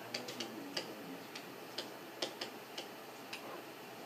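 A pen stylus clicking and tapping lightly against its writing surface as a word is handwritten: about a dozen faint, irregularly spaced ticks.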